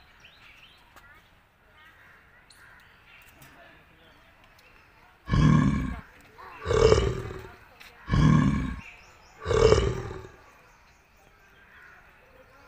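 Sloth bear calling four times about a second apart, alternating a deep call with a higher one, over faint bird chirps.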